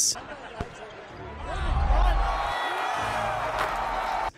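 Basketball game sound from an NBA arena: crowd noise that swells about a second and a half in, with wavering high tones through it. There is a sharp knock near the start and another near the end.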